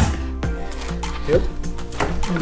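Background music with a steady beat, and a single hammer blow about half a second in as a seat bracket is knocked into its slider rail.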